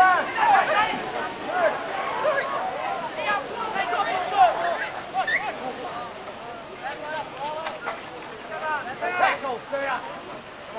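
Spectators' voices calling out and talking over one another, with no clear words. They are loudest in the first half, die down past the middle and pick up again near the end.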